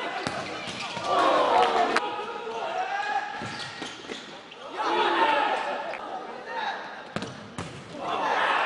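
Futsal match in an indoor sports hall: indistinct shouts from players and spectators, loudest about a second in and again around five seconds, with the sharp knocks of the ball being kicked and bouncing on the hard floor.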